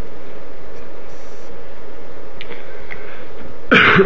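Steady background hiss with a few faint clicks and a brief faint high tone, then near the end a man clears his throat once, loudly and briefly.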